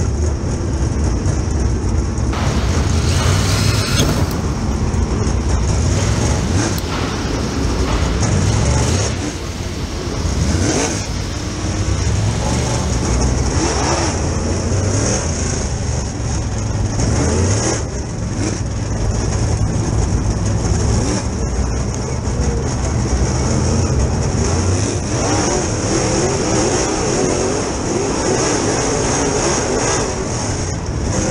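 Super Late Model dirt-track race car's V8 engine heard from inside the cockpit, running loud and hard with its pitch rising and falling as the throttle comes on and off, with the engines of the cars just ahead mixed in.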